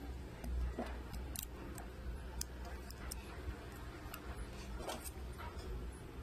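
Small irregular clicks and taps of fingers handling a smartphone: pressing on its glass back cover and fitting the SIM tray, over a low steady hum.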